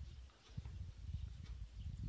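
Faint wind buffeting the microphone: an uneven, gusting low rumble.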